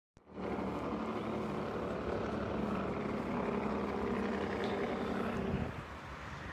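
Steady engine drone that drops away about five and a half seconds in.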